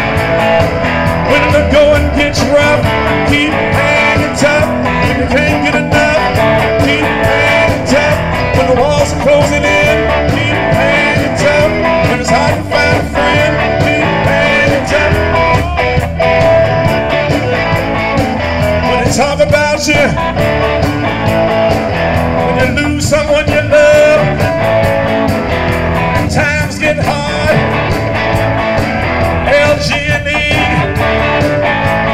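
Live blues band playing amplified music with electric guitar and a steady beat.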